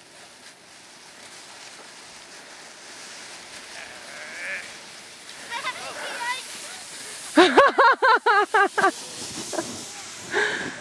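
Sleds sliding over snow, a soft hiss that slowly grows louder. About seven and a half seconds in, a high voice laughs loudly in a run of quick wavering pulses for about a second and a half.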